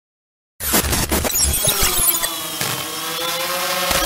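Glitch-style logo intro sound effect. About half a second in, crackling digital noise bursts in, then settles into a stack of held tones that rise slightly in pitch toward the end.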